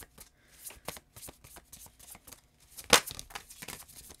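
A deck of tarot cards being shuffled and handled by hand, the cards rubbing and flicking in many short soft clicks, with one much louder sharp snap just before three seconds in.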